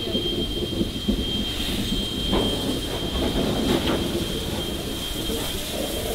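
NSWGR 59 class steam locomotive 5917 rolling slowly past at close range: a steady low rumble of wheels and running gear, with a few knocks and a thin, steady high whine throughout.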